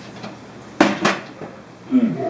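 Two quick clattering knocks about a quarter second apart, from hard objects being moved while rummaging in a cabinet.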